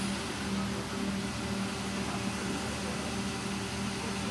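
Steady machinery hum of a plastic injection moulding machine and its auxiliary equipment running, a constant low drone with a faint hiss above it.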